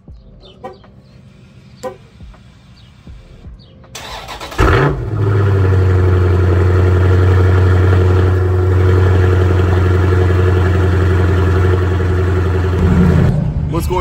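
Dodge Challenger T/A 392's 6.4-litre HEMI V8 starting about four and a half seconds in, after a few faint clicks: a loud flare as it catches, then a steady, deep idle, with a brief rise near the end.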